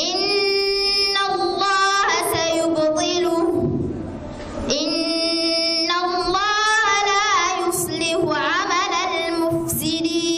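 A female reciter's melodic Qur'an recitation, long held notes with ornamented rising and falling pitch runs, broken by a pause for breath about four seconds in.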